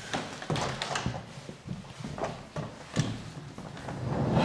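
Footsteps on laminate flooring: scattered, irregular light knocks and clicks.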